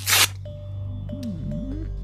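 Film soundtrack music over a low steady drone. It opens with a short, loud rustling burst, and about a second in a sliding tone dips and climbs back up.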